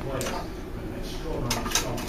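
Plastic clicks and light rattling from a toy dart shotgun being handled and loaded with a dart. A single click comes just after the start, and a quick run of three sharp clicks about one and a half seconds in.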